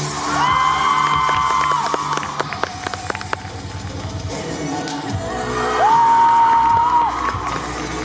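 Routine music playing with a crowd cheering over it: two long, high held cheers, the second one louder, and a scatter of sharp knocks in between.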